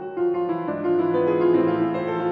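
Steinway concert grand piano played solo in a classical passage of held chords under moving notes, growing louder just after the start.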